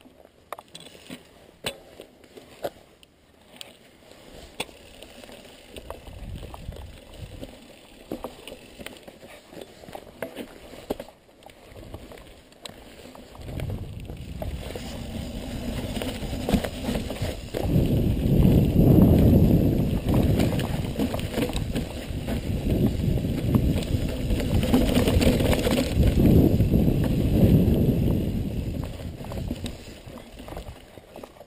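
Mountain bike riding down a rooty forest singletrack: scattered clicks and rattles at first. Then, from about 13 seconds in, a loud rush of wind on the microphone with tyre and trail noise as speed builds, easing near the end.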